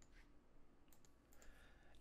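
Near silence: room tone, with a couple of faint computer mouse clicks about one and a half seconds in.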